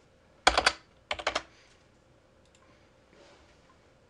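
Computer keyboard keys being typed in two quick bursts of a few strokes each, about half a second in and again about a second in, followed by a couple of faint clicks.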